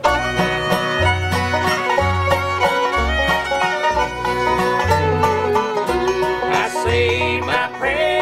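Bluegrass band playing the instrumental opening of a song: banjo, fiddle and guitar over a low bass line that changes note about once a second.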